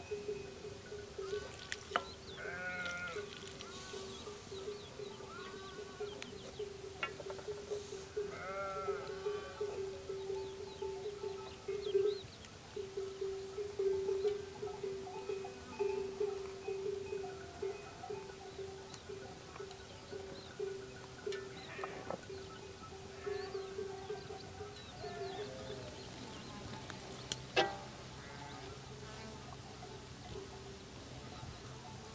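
Livestock bleating a few times in the background over a steady, wavering hum. Now and then there is a sharp click or crunch of a knife cutting into green bell peppers.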